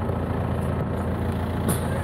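John Deere tractor's diesel engine idling steadily, a low, even hum.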